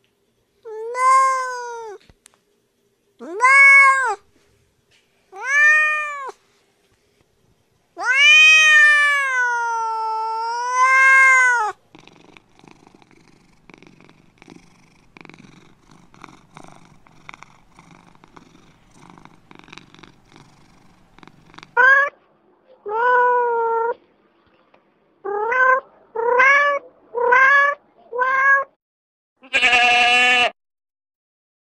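Cats meowing: three short meows, then one long meow of about four seconds that rises and falls in pitch, then a quieter stretch of rough rumbling, then a quick run of about seven short meows. A goat's bleat starts right at the end.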